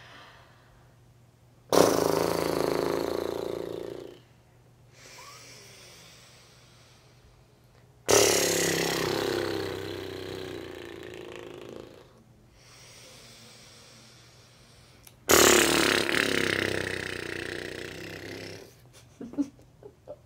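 A woman blowing "horse lips": three strong puffs of air out through loosely closed lips, setting them flapping like a horse's. Each blast starts suddenly and fades away over two to four seconds, with faint breaths in through the nose between.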